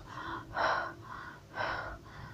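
A woman gasping and breathing hard, with two heavy breaths about a second apart and fainter ones between: startled breathing on waking from a nightmare.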